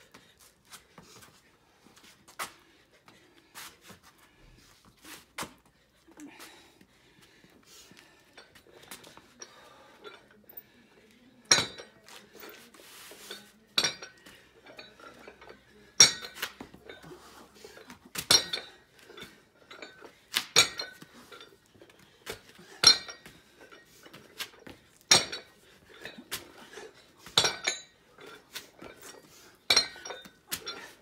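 Metal plates of an adjustable dumbbell clinking against the stone patio and each other, one sharp clink about every two seconds as the dumbbell is set down and lifted again on each rep. The clinks start about eleven seconds in, and only faint light knocks come before them.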